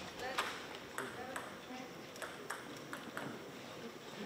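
Table tennis balls knocking off bats and tables elsewhere in the hall: scattered sharp clicks, a few a second at irregular spacing, with faint voices in the background.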